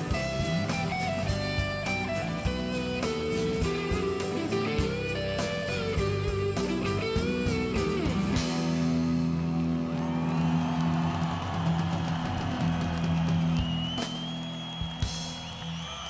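Live rock band playing an instrumental ending: electric guitar over a drum kit, then after about eight seconds the drums drop out and held guitar chords ring on, with a high note gliding up and holding near the end.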